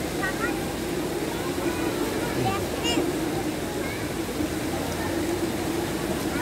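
Steady ambient noise at a public swimming pool: a continuous rush of water with faint, distant voices over it.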